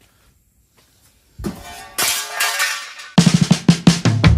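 Near silence for over a second, then background music comes in: a rising swell, and about three seconds in a drum-kit beat with heavy bass starts.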